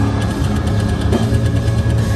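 Live rock band playing loud through a concert PA, dominated by a steady, heavy low drone of bass and distorted guitar.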